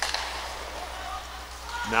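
Quiet ice hockey rink ambience: a low steady hum under faint background noise, with a soft click right at the start. A commentator starts speaking near the end.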